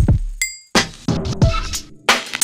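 Looped electronic beat: hard drum hits with deep bass, and a short bright bell-like clink ringing about half a second in.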